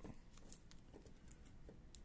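Near silence with a few faint light clicks and taps from hands handling the loose cylindrical battery cells.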